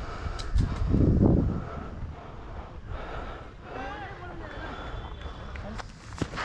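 Wind buffeting the microphone in a low rumble, with a stronger gust about a second in. Faint distant voices call across the field near the middle.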